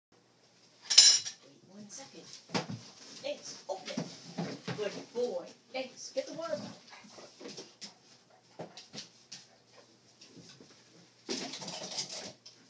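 A sharp, brief burst of noise about a second in, then a low voice talking quietly in short phrases, followed by scattered light clicks and knocks and another short burst of noise near the end.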